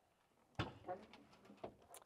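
Trunk lock of a 1970 Plymouth Cuda turned with its key and the trunk lid released and lifted: a sharp latch click about half a second in, then a few lighter clicks and knocks.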